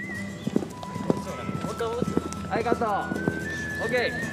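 Hoofbeats of a cantering horse on an arena's sand footing, a series of irregular dull thuds, mostly in the first half.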